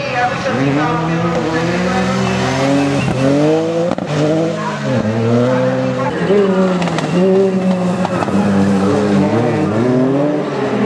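Ford Fiesta rally car's engine revving hard through tight corners, its pitch climbing and then dropping sharply several times at gear changes and lift-offs.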